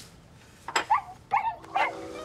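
A dog giving three short barks in quick succession.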